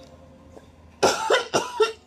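A man coughing about four times in quick succession from about a second in, a fit of coughing from a head cold.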